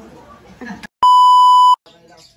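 A loud, steady electronic beep tone lasting under a second, about halfway through, switching on and off abruptly with a moment of dead silence on either side: a beep laid in during editing at a cut between scenes.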